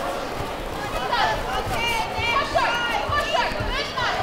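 High-pitched voices shouting around a kickboxing bout, from coaches and spectators, with a few dull thumps from the fighters' kicks and feet on the mat.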